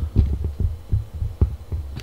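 Irregular low thuds of handling noise and footsteps on a wooden floor, picked up by a handheld camera's microphone as it is carried. A couple of sharper knocks stand out, the loudest about one and a half seconds in.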